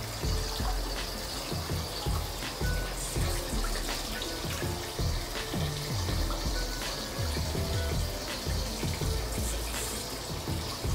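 Water running steadily from a head spa's arched overhead shower onto wet hair and splashing into the basin below, with soft background music.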